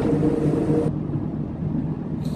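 A steady low hum made of a few held tones, its upper hiss dropping away about a second in.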